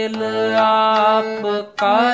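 Harmonium playing a shabad kirtan melody in held notes over a steady low note, with a singing voice gliding between pitches. There is a short break about three-quarters of the way through before the next note starts.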